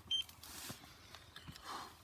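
A single short, high electronic beep just after the start, over a faint hiss.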